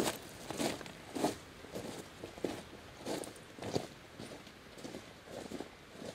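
Hiking boots crunching on loose stones and rocks, footsteps of two walkers growing fainter as they move away.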